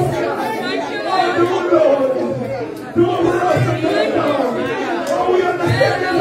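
Overlapping voices of a church congregation, many people speaking aloud at once, with a brief lull about halfway through.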